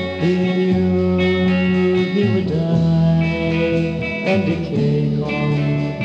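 1960s garage-band ballad recording: electric guitars and bass guitar playing a slow instrumental passage between sung lines, with long held notes over the bass.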